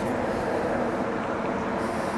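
Steady road traffic noise.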